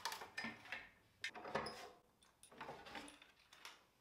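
Metal bar clamps being handled on a wooden bench: a few short groups of faint clicks and clatters from the clamps' bars, jaws and handles.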